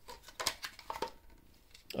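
Hard plastic vacuum-cleaner parts knocking and clicking together as a wall-mount bracket is tried on the vacuum body: a few light clacks between half a second and a second in, then faint handling rustle.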